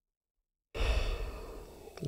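A man's sigh-like breath close to the microphone, starting suddenly under a second in and fading away over about a second.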